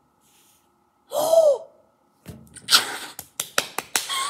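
A girl's short, excited squeal whose pitch arches up and falls, then breathy, excited laughing with a quick run of hand claps: her delighted reaction to drawing the pink marker she hoped for.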